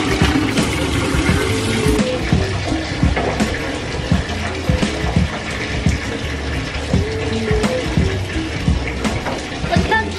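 Bathtub filling from the tap, a steady rush of running water, under background music with a beat.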